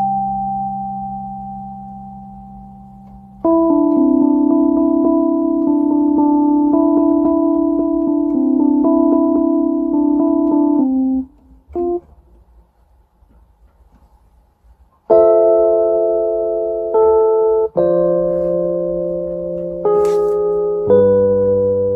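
Piano chords played slowly on a keyboard, picked out by ear: each chord is struck and left to ring, with the upper notes shifting under a held chord, then a few seconds of quiet before three more chords near the end.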